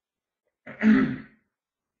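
A man clearing his throat once, a short burst about a second in.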